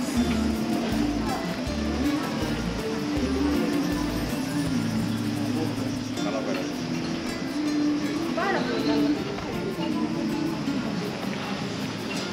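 Music with sustained notes and a stepping bass line, which fades out after about four and a half seconds, with a voice rising briefly about eight and a half seconds in.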